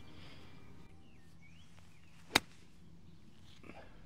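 A golf club striking a golf ball once on a 70-yard pitch shot: a single crisp click a little over two seconds in.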